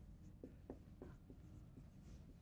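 Faint strokes of a dry-erase marker writing numbers on a whiteboard: several short squeaks a fraction of a second apart.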